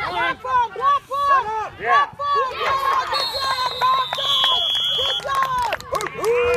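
Sideline spectators shouting and cheering in quick repeated yells as a player runs for a touchdown. About three seconds in, a referee's whistle is blown in a long steady blast for about two seconds.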